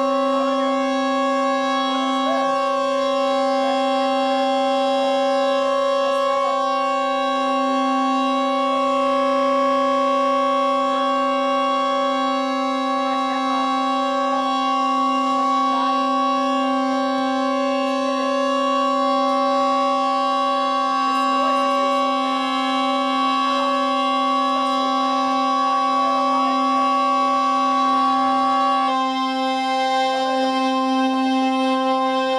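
Synthesizer drone: a loud, steady chord of sustained tones that hardly changes, with its highest tone and some upper overtones cutting off about a second before the end.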